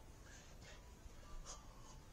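Near silence: a few faint scratchy rustles, the clearest about one and a half seconds in, from a person moving about.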